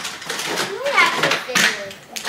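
Laughter and voices, including a child's, with a sliding, sing-song vocal sound near the middle.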